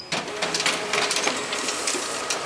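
Sharp multifunction copier starting a copy job after its start key is pressed: the machine runs with a steady whir and fast, fine clicking, with a faint hum through the first second or so.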